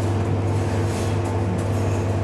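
Steady low machine hum with an even hiss behind it, unchanging throughout.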